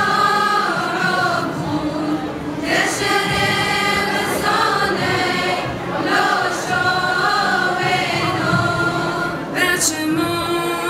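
A female choir singing held notes in parts, with sharp hissing 's' consonants a little before three seconds in and again near the end.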